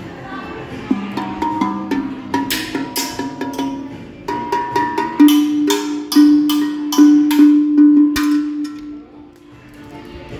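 Steel tongue drums struck with mallets, giving a run of ringing pitched notes. The strikes come thicker and louder from about four seconds in, then die away near the end.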